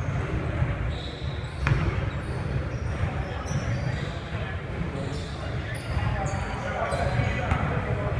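Basketball bouncing on a hardwood gym floor, with indistinct voices and short high squeaks echoing in a large indoor gym.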